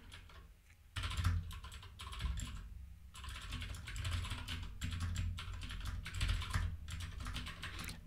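Typing on a computer keyboard: a run of quick key clicks starting about a second in, with a brief pause near the middle.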